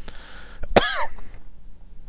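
A man clearing his throat once, a short sharp sound with a brief voiced tail, about three-quarters of a second in.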